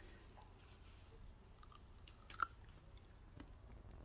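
Faint chewing of a ripe physalis (cape gooseberry) berry, with a few soft, wet clicks from the mouth, the clearest about two and a half seconds in.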